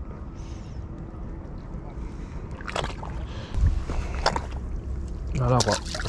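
Wind rumbling on the microphone with water sloshing, a few short sharp splashing or handling noises in the middle, and a brief voice sound shortly before the end.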